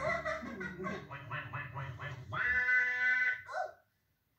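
Rag-doll puppet characters chattering in nonsense gibberish: a run of quick, short syllables, then one long held sound about two and a half seconds in and a short call just before the end.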